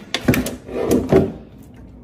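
Knocks and scrapes as a dog tugs a plastic bottle toy out of a gap by a door, the toy bumping against the door and trim in two bouts, about a quarter second in and about a second in.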